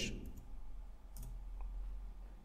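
A few faint computer keyboard and mouse clicks, short and spaced out, as a file name is typed and the dialog is confirmed.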